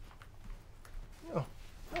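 Quiet room tone with a few faint clicks, then a man's drawn-out "Oh" near the end.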